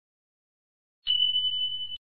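Notification-bell sound effect of a subscribe-button animation: a single steady high beep that starts about a second in, lasts about a second and cuts off abruptly.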